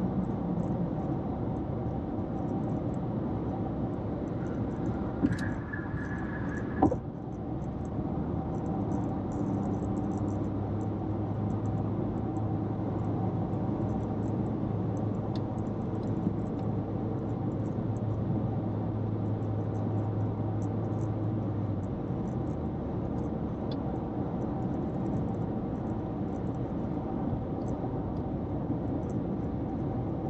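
Steady road and tyre noise of a car at highway speed, heard from inside the cabin. A brief high tone sounds about five seconds in and ends in a sharp click about two seconds later, and a low steady hum runs through the middle stretch.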